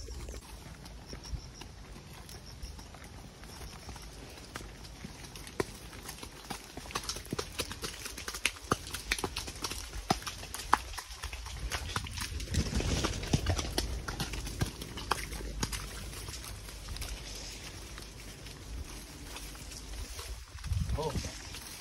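Hooves of horses walking on a dirt and mud trail: an irregular clip-clop, busiest in the middle stretch, over a low steady rumble.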